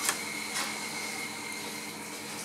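A steady machine hum with a faint, high-pitched whine running through it.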